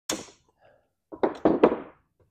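Steel parts of a car's accelerator pedal assembly knocking and clattering on a wooden workbench as it is taken apart: one sharp knock at the start, then a quick run of knocks about a second in.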